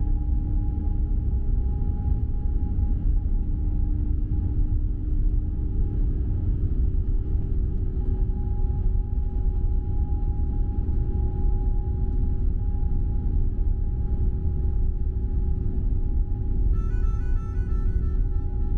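Airbus A350-900's Rolls-Royce Trent XWB engines at takeoff power, heard from inside the cabin: a deep rumble with steady whining tones over it. Background music with plucked notes comes in near the end.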